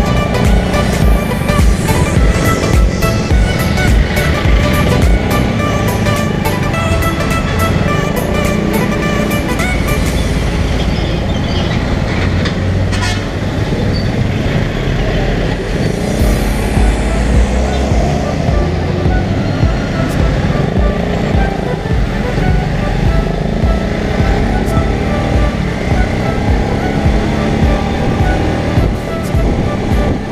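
Background music playing over the ride noise of a Suzuki GSX-R150, a 150cc single-cylinder sport bike, moving through traffic: steady engine and road rumble with other vehicles around it.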